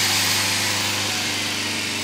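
Electric motor and generator bench rig running steadily: a smooth whir with a constant low hum.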